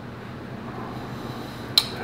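Faint handling of a stack of baseball cards, the top card being slid off and moved to the back, over a low steady room hum. One short sharp click near the end.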